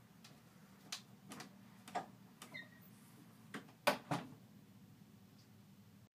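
An interior wooden door being pushed shut, with a few light knocks and clicks from someone moving about; the loudest are two clicks close together about four seconds in.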